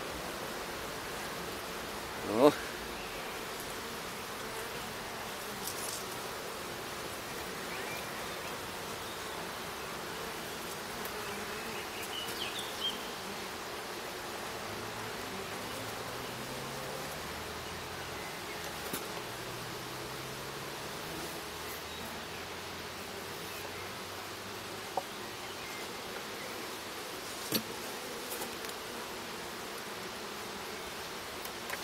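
Honeybees buzzing steadily around an open Mini Plus hive as it is being expanded. About two and a half seconds in comes a brief, louder buzz that rises and falls in pitch, the loudest moment. A few faint clicks follow near the end as the hive boxes are handled.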